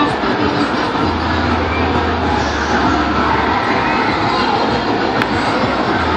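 Loud, steady fairground din of ride machinery and crowd, with a low hum coming in about a second in.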